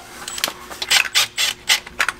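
A 7 mm socket loosening the worm-gear hose clamps on a heater's coolant hoses: a quick run of irregular clicks and ticks that come closer together in the second half.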